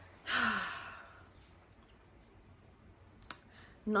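A woman's sigh: one audible breath out, about a second long, near the start. After it comes a quiet stretch, then a couple of faint clicks just before she speaks again.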